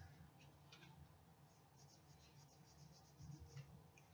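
Near silence, with faint rubbing and small ticks of card and paper being creased and folded by hand.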